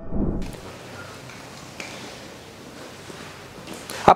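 The background music ends with a short low swell, then a steady, even hiss of background noise with a couple of faint clicks.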